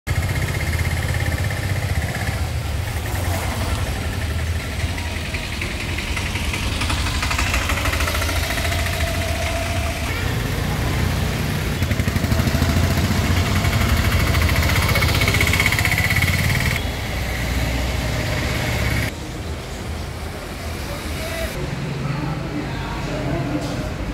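A vehicle engine running steadily, with people talking indistinctly; about nineteen seconds in the sound drops and turns duller.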